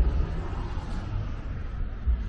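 Outdoor background noise: a steady, fluttering low rumble with a faint hiss, and no distinct event.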